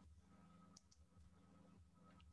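Near silence: quiet room tone with two faint computer-mouse clicks in quick succession about three-quarters of a second in.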